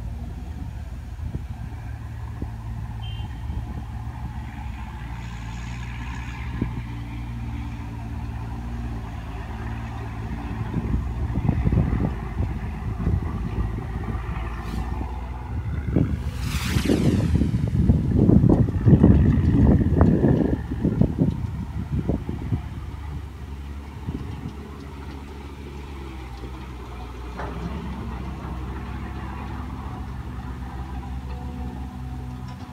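Truck engines labouring up a steep dirt hill road, the rumble swelling from about a third of the way in and loudest about two-thirds through, then easing off. A brief falling hiss comes just before the loudest stretch.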